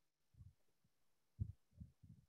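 Near silence on a call's audio line, broken by three faint, low, muffled thumps.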